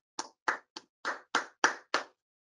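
Hand clapping: separate sharp claps, about three a second, heard over a video call, cutting off suddenly near the end.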